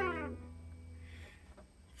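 The last sung note of a blues song, held and falling away, over the final chord of a hollow-body electric archtop guitar that rings on and fades out after about a second.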